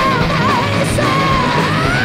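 Live melodic speed metal band playing: a high male vocal held with a wavering vibrato over distorted electric guitars, bass and drums, the held note rising near the end.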